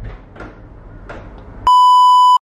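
Faint street noise comes in from the busy city street below. Near the end a loud, steady electronic beep at one pitch cuts in and holds.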